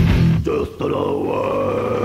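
A heavy metal band recording plays from a 1998 promotional cassette. The music drops out briefly under a second in, then comes back with one long held note that rises and falls in pitch.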